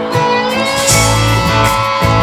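Live band playing with guitars ringing and strummed; a deep bass line comes in about a second in.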